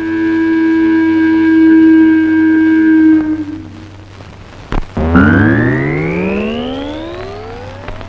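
Film background score: a single held note for about three and a half seconds, then a sharp hit and a long, slowly rising pitch glide.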